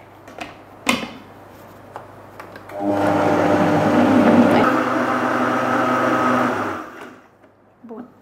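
High-speed countertop blender blending a thick frozen mixture of berries, banana and avocado. There is a single click about a second in, then the motor runs steadily for about four seconds, its pitch stepping slightly lower about halfway through, and it then stops.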